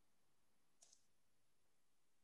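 Near silence with room tone, broken a little under a second in by one faint, brief double click.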